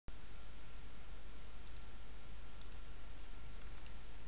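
Steady background hiss of a quiet recording, with a faint steady high tone and a few faint clicks, the first about a second and a half in.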